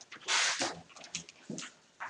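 Sheets of paper rustling in short bursts as they are handled and sorted by hand, loudest about half a second in.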